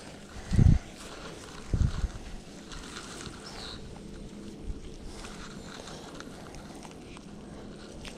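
Two dull, deep thumps in the first two seconds, then a faint, steady outdoor background with a faint low hum.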